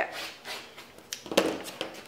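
Quilting rulers and cotton fabric being shifted by hand on a rotary cutting mat: soft rustling and sliding with small clicks, and one sharp knock a little over a second in.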